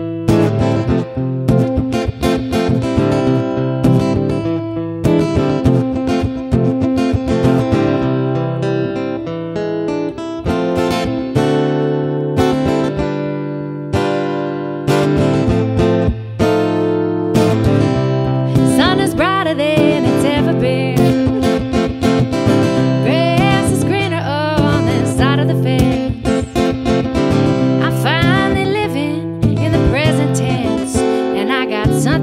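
Acoustic guitar playing a song's intro, then a woman's voice starts singing over the guitar a little past halfway through.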